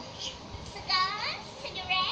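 A high-pitched voice: a long call sliding down in pitch about a second in, then a few short squeaky syllables near the end.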